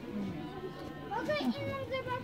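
Background voices of people yelling in a shop, with one high-pitched voice rising about one and a half seconds in, over a steady low hum.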